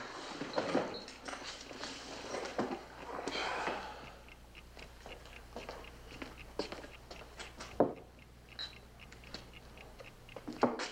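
Faint, irregular clicks and crackles over a steady low hum, with one louder click about eight seconds in.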